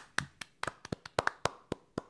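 Two people clapping their hands close to their microphones: about a dozen single, sharp claps in two seconds, falling unevenly where the two sets of claps overlap.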